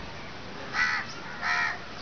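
A bird calling twice: two short calls about two-thirds of a second apart.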